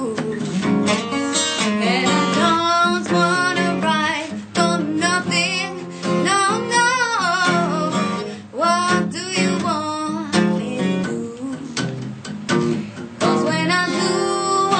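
A woman singing a blues song with a wavering vibrato, accompanied by a strummed acoustic guitar. Near the end the voice stops for a couple of seconds, leaving only the guitar strums, then comes back in.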